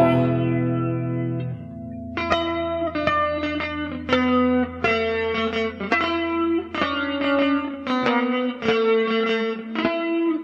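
Electric guitar played through effects. A held chord rings and fades out over the first second and a half, then picked notes and chords start again about two seconds in, in a steady repeating pattern.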